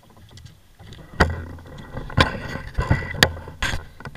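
Camera handling noise: a few sharp knocks and clicks over a low rumble as the camera is picked up and repositioned, starting about a second in.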